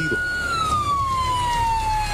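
Emergency vehicle siren wailing: a single tone holds high, then glides slowly down in pitch from about half a second in. A steady low rumble runs underneath.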